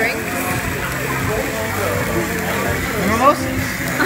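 Restaurant ambience: diners' voices talking over background music, with a laugh about three seconds in.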